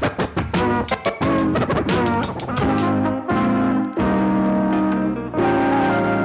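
Turntablist battle routine on turntables and a mixer: a record chopped into rapid, choppy stabs for the first two and a half seconds, then long held chords that break off briefly a few times.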